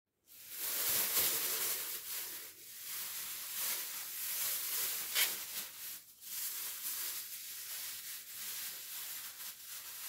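Thin plastic cap crinkling and rustling as it is pulled over the hair and adjusted with the hands, with a few sharper crackles.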